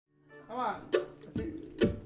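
A short vocal sound, then three sharp, evenly spaced taps a bit under half a second apart, counting the band in just before the song starts.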